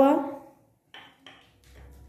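Two light, short clinks about a second in, a quarter second apart, followed by a few fainter ticks. They come from a plastic spice box knocking against a stainless steel mixing bowl as ground dried coriander is tipped in.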